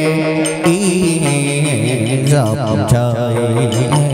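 Hát văn (chầu văn) ritual music: a plucked đàn nguyệt moon lute and a male voice sing a wavering, ornamented line, punctuated by a few sharp percussion strokes.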